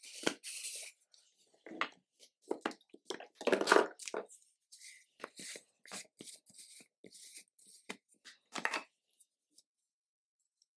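Irregular clicks, taps and rustles of a makeup container and tools being handled, as a container of loose setting powder is opened and powder is loaded onto a makeup sponge. The busiest handling comes a few seconds in, and it goes quiet near the end.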